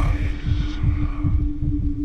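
Heartbeat sound effect: quick, low thumps under a steady droning tone, played over the event's sound system.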